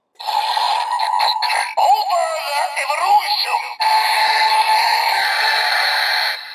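Kamen Rider Build DX Evol Trigger toy, plugged into the Evol Driver belt, playing its electronic sound effects and synthesized voice through its small speaker after its top button is pressed. The sound is tinny, and a new, steadier section starts about four seconds in.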